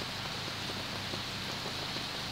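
Steady rain falling onto flood water and trees, an even hiss of drops with no letup.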